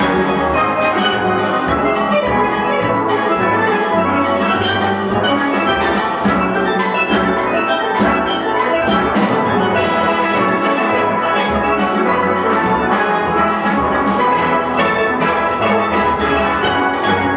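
A large steel orchestra playing a busy, up-tempo piece: many steel pans striking a dense run of ringing notes over low bass notes and a drum kit, with no pause.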